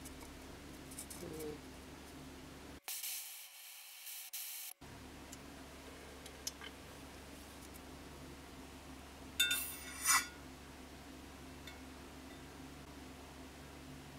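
Hot gold bead quenched in a glass jar of water: a brief hiss about three seconds in. Later come two short glassy clinks, tweezers against the jar.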